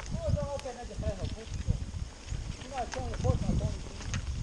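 Mountain bike rattling and thudding over a bumpy dirt trail, with uneven low thumps from the ride and wind noise. A wordless voice calls out briefly twice, near the start and again about three seconds in.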